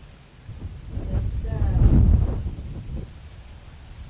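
Wind buffeting the microphone: a low rumble that swells to its loudest about two seconds in and then dies back, with a faint voice under it.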